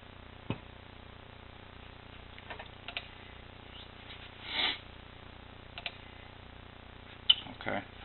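Handling of cables and small hardware: a scatter of light plastic clicks and knocks as plugs are fitted, with a short rustle in the middle and the sharpest click near the end.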